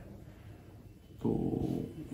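A man's speech pauses briefly with only quiet room tone, then he says a single long, drawn-out hesitation word, 'to…', about a second in.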